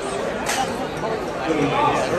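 Indistinct chatter of several voices talking at once, with no single clear speaker.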